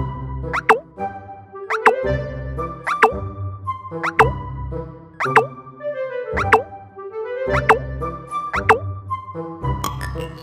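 Playful children's cartoon background music with a bouncy beat. A short falling 'plop' sound effect comes in about once a second.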